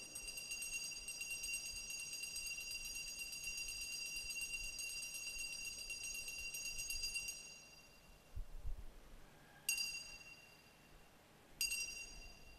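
Altar (sanctus) bells shaken in a continuous jingling ring for about seven seconds, then rung twice more in short rings that die away. They mark the elevation of the consecrated host at Mass.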